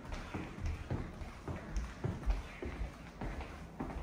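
Footsteps on a timber floor: a steady run of soft thumps and taps, about three a second, from people walking.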